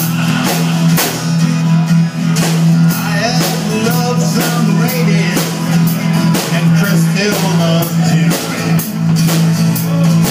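Live country-rock band playing without vocals: strummed acoustic guitars, an electric bass holding a low note and a steady drum-kit beat. A wavering melodic line runs through the middle.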